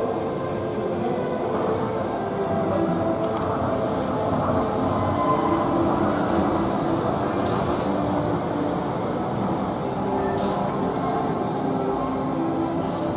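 Straddle-beam monorail train on rubber tyres running into a station alongside the platform and slowing, a steady running rumble with motor tones that swells slightly around the middle as the cars pass.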